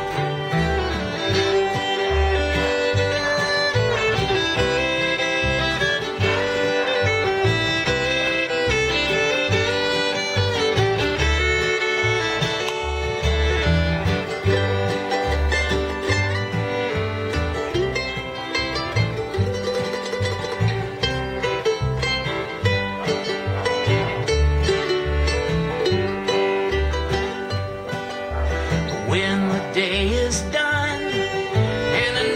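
Live bluegrass string band playing an instrumental break, the fiddle carrying the melody over strummed acoustic guitar, mandolin and plucked upright bass.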